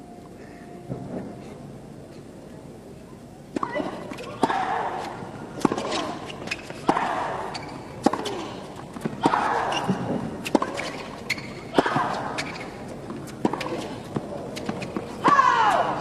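Tennis rally: about a dozen racket strikes on the ball roughly a second apart, starting about three and a half seconds in, each shot followed by a player's short grunt. The rally ends with a ball hit out, near the end.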